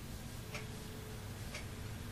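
Faint, regular ticks about once a second, clock-like, over quiet room tone.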